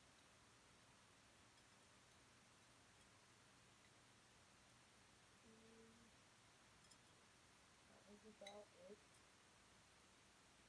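Near silence: faint room tone. About five and a half seconds in there is a short, faint hummed note, and near the end a few more brief hummed sounds with faint clicks.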